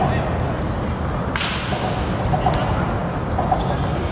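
A baseball bat striking a ball: one sharp crack about a second and a half in, with a fainter click later, over a steady low rumble.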